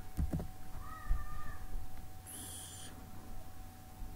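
A few keyboard clicks, then two short pitched animal calls: one about a second in, and a higher one just past two seconds.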